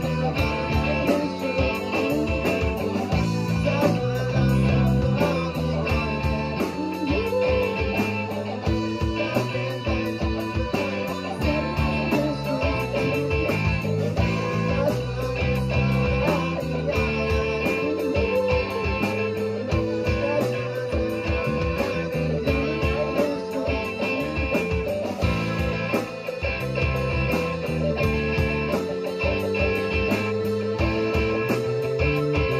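Live rock band playing, with electric guitars through amplifiers, bass, keyboard and a steady drum beat.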